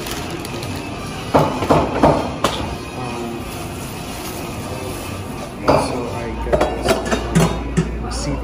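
Thin plastic shopping bag rustling and crinkling in two short spells, about a second in and again near six seconds, as items are pulled out of it, over a steady background hum.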